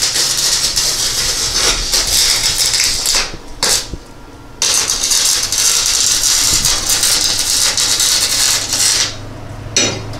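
Wire-feed welder arc crackling as steel bar is welded into the car body: a run of about three seconds, a short stop with one brief tack, then a longer run of about four seconds and one more short burst near the end.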